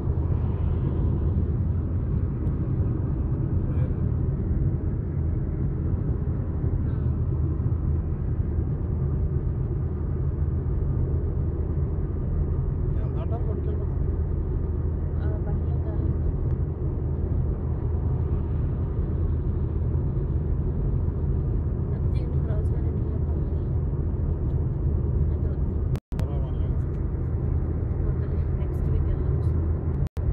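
Steady low rumble of tyre, road and engine noise heard inside a car's cabin while cruising at motorway speed. The sound cuts out for an instant about 26 seconds in.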